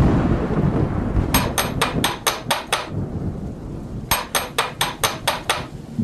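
A door knocker ring rattled hard against a wooden door in two quick runs of about eight knocks each, over a low rumble of thunder and rain.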